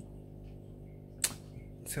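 A pause between spoken sentences over a low steady hum, broken by a single sharp click just past a second in.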